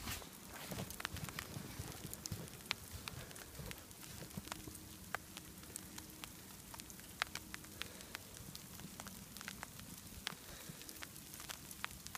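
Faint outdoor hush of a snowstorm, with many small scattered ticks and crackles of falling snow landing on the jacket and phone.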